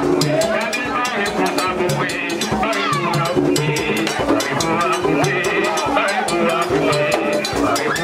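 Vodou ceremonial music for dancing: fast, steady drumming and percussion, with voices singing over it.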